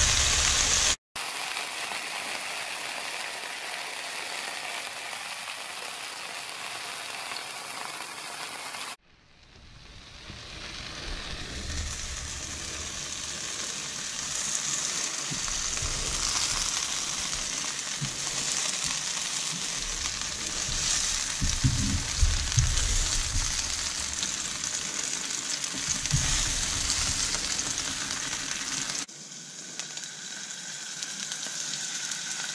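Sea scallops searing in hot oil in a frying pan, a steady sizzle. It cuts out sharply about a second in and again about nine seconds in, then builds back up. A few light knocks come later as the scallops are lifted out with a fork.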